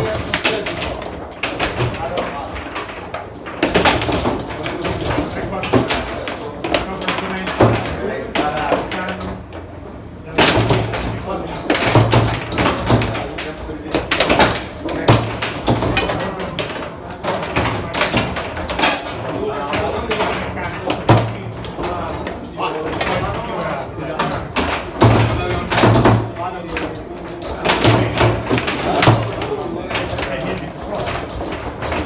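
Foosball game in play: repeated sharp knocks and clacks from the ball being struck by the figures and hitting the table, over people talking in the room.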